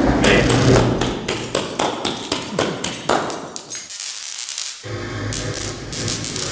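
Experimental electronic music: a dense run of sharp clicks and crackles with a falling sweep, giving way about five seconds in to a low, steady electronic texture.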